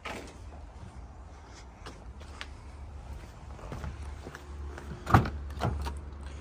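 Driver's door of a 2023 Toyota Hilux being unlatched and opened: a sharp latch click about five seconds in, then a second smaller click, after a few faint clicks.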